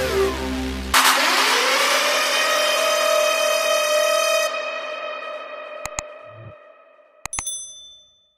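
Outro sound effects: about a second in, a sudden metallic hit rings on and fades away over several seconds. Near the end come a few sharp mouse clicks and a short, bright bell ding, the subscribe-button and notification-bell effects.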